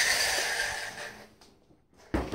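Electric motor and drivetrain of a small ECX Temper RC truck whirring as it drives across the floor, fading out about a second and a half in as the truck slows and stops.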